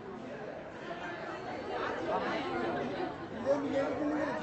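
Several voices chattering at once, indistinct and overlapping, getting louder about halfway through.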